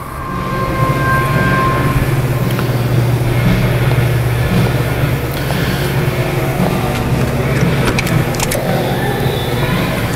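A steady low mechanical drone that swells up over the first second and then holds evenly, with a few faint clicks about eight seconds in.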